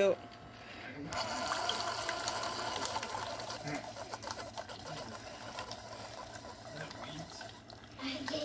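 Keurig single-serve coffee maker brewing, with a steady hum as a stream of coffee pours into a ceramic mug. It starts about a second in and slowly fades.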